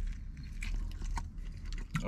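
A man biting into and chewing a saucy burger: faint, irregular wet chewing clicks over a low steady hum.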